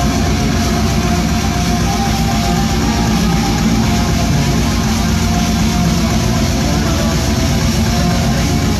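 A heavy metal band playing loud and live: distorted guitars over dense, rapid drumming that fills the low end.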